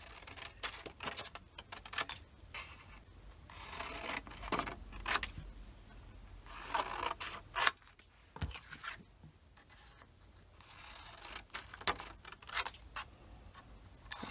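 Scissors snipping through printed paper in a series of cuts, with sheets of paper slid and shuffled about on a cutting mat between the cuts.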